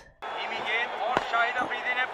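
Televised cricket commentary starting about a quarter second in, an excited commentator's voice over steady crowd noise, with one sharp crack about a second in, the bat striking the ball on a slow delivery.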